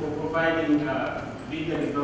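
Only speech: a man speaking into a lectern microphone.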